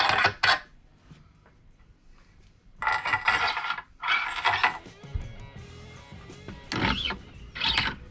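Metallic clinks and ringing from a steel thru axle being slid into and knocked against a black iron pipe tee fitting, in a few separate loud bursts with quiet stretches between. Music plays under it.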